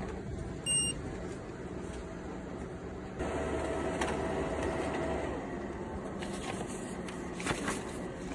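Office laser printer printing: a short electronic beep about a second in, then about three seconds in the printer's mechanism starts running with a steady hum as it feeds paper, and a click near the end as the sheet comes out.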